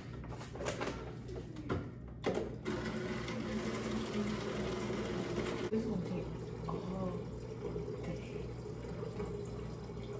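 Water pouring into a plastic jug, a steady stream from about two seconds in that stops near the middle, over a constant low hum.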